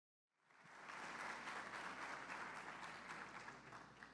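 Audience applauding, fading in about half a second in and easing off slightly toward the end.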